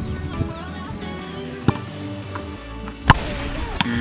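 Background music with two sharp thuds of a football being kicked. The louder thud comes about three seconds in.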